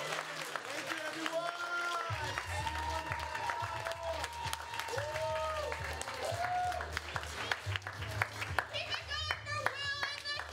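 Applause from the audience and the cast over music, with a bass line coming in about two seconds in. The clapping gets sharper and more distinct near the end.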